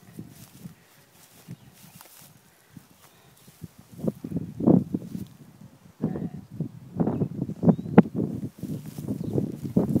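Irregular footsteps crunching on dry pasture dirt and grass, starting about four seconds in and becoming steadier after six seconds, with one sharp click near the end.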